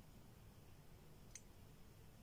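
Near silence: faint room tone, with a single faint click a little past halfway.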